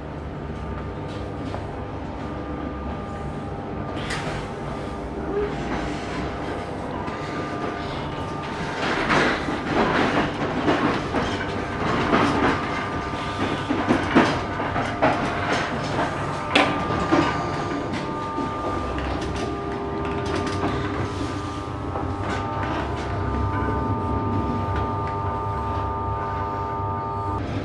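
Ganz-MÁVAG diesel multiple unit running, heard inside the passenger car: a steady engine and running-gear drone with several held tones. A run of knocks and clatter comes from about nine to seventeen seconds in.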